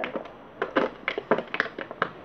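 Hands handling small stationery items and their packaging: an irregular run of sharp clicks, taps and crinkles, about eight in two seconds.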